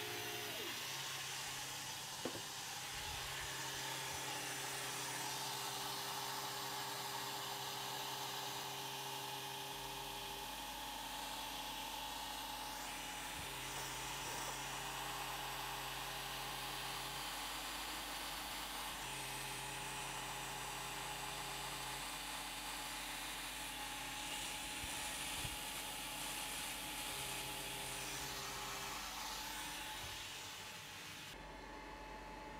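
Longer Ray 5 diode laser engraver running a cutting pass. Its stepper motors hum in stretches of a few seconds, starting and stopping as the head moves, over a steady hiss. A lower hum joins about ten seconds in.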